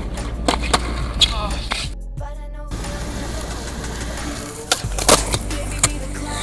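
Skateboard rolling on a hard court surface, with sharp wooden clacks of tail pops and landings, a cluster of them near the end. Background music plays over it.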